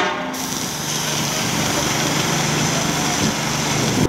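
Paint-spraying machine's motor running steadily, with the hiss of paint spraying from hose-fed spray guns.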